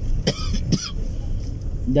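A man coughs twice in quick succession, short and sharp, over the steady low rumble of a car's cabin.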